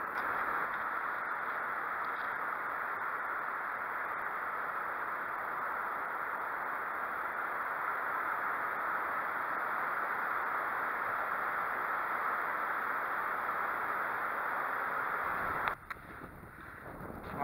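Steady, even rushing noise of wind and surf on an open sandy beach, with no distinct waves or strokes. It cuts off abruptly just before the end.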